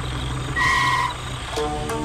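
A vehicle engine running with a steady low hum, with one short beep about half a second in. Music starts near the end as the engine sound drops away.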